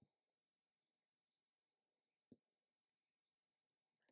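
Near silence, with one faint short click a little past halfway.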